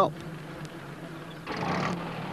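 Small van engine running with a low, steady hum, a rushing noise joining in about one and a half seconds in as the van pulls up.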